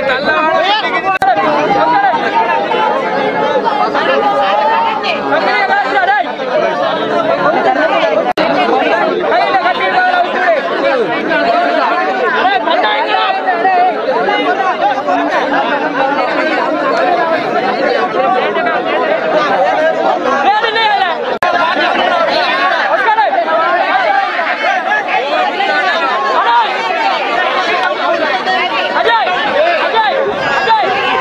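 Crowd chatter: many people's voices overlapping in a steady hubbub.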